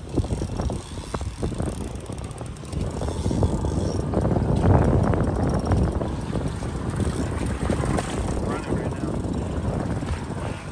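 Wind buffeting the microphone on a boat at sea, a steady low rumble with the wash of water and boat noise under it.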